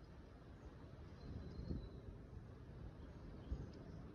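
Faint low wind rumble on the microphone, with two soft low thumps, one about a second and a half in and one near the end, and a brief faint high whistle between them.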